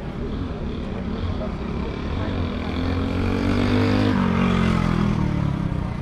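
Engine of a passing motor vehicle on the road, growing louder and higher in pitch, then dropping in pitch after about four seconds as it goes by.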